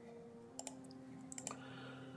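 Light clicks at a computer in two small groups, the first about half a second in and the second near one and a half seconds, over a faint steady hum.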